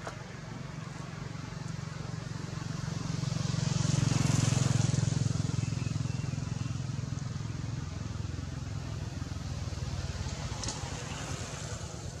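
A motor vehicle's engine running close by and passing: it grows louder to a peak about four seconds in, then fades back to a steady lower running sound.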